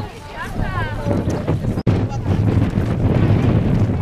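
Wind rumbling on the camera microphone, with people's voices in the first second or so; after a brief dropout a little before the midpoint, mostly the wind rumble.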